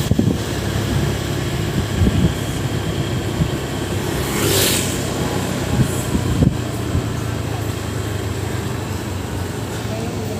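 Road traffic with a vehicle engine running steadily, and a passing vehicle making a brief rush of noise about four and a half seconds in.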